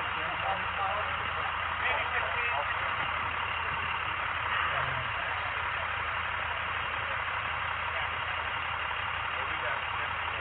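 A vehicle engine idling steadily: a constant low hum under an even hiss, with faint, indistinct voices.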